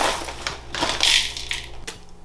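Dry cereal flakes crackling and rustling in their plastic bag as they are shaken out into a bowl, in two bursts, the second about a second in, with a sharp click near the end.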